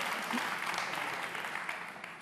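Studio audience applauding, the clapping dying away toward the end.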